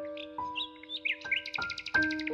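Slow, gentle solo piano notes ringing on, with birdsong chirping above them; a fast high bird trill starts near the end.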